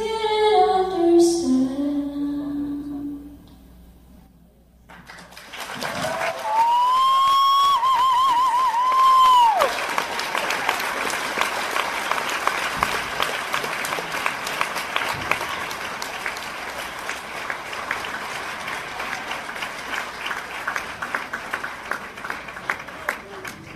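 A woman's singing voice finishes the song's last phrase and falls away. After a short pause the live audience breaks into applause. A loud whistle is held for about three seconds, warbling in the middle, and then the clapping goes on, slowly thinning.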